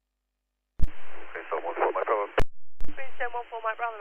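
Air traffic control radio voice transmissions, thin and narrowband, from a silent channel. The squelch clicks open about a second in, a first short transmission ends with a click, and a second transmission keys in with a click near three seconds in.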